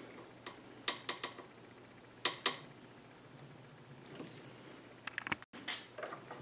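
Light handling of a wrench and leather around a revolver barrel shroud held in a bench vise: a few faint scattered metal clicks, two sharper ones a couple of seconds in, and a quick cluster of clicks near the end.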